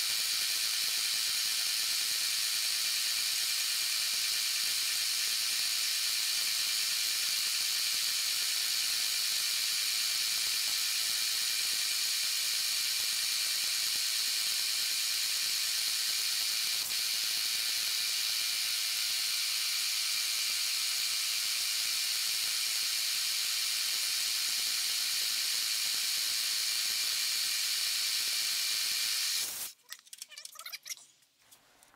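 Milling machine running with its end mill taking a light facing cut, about eleven thousandths, off the parting edges of a model steam engine's connecting rod and cap: a steady high whine and hiss that cuts off suddenly near the end.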